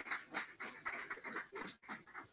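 A small audience applauding: a quick, even patter of hand claps, heard faintly.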